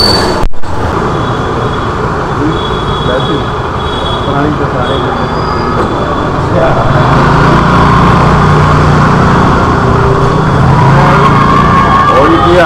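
Loud, steady rumbling street noise with voices in the background; a low hum joins about seven seconds in and lasts some four seconds.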